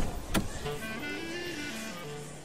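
A car door latch clicks open about a third of a second in as the driver's door is opened. A soft background-music melody of held notes then moves up and down in pitch.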